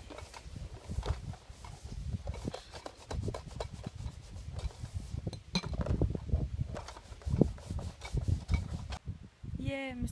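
Dishes being washed by hand in a plastic basin: rubbing and scrubbing with many small clinks and knocks of crockery and cutlery. A voice is heard briefly near the end.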